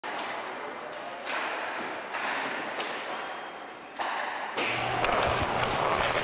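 Ice hockey practice on the rink: skate blades scraping on the ice, with several sharp knocks of sticks and pucks. The sound grows louder, with a low hum, about two-thirds of the way in.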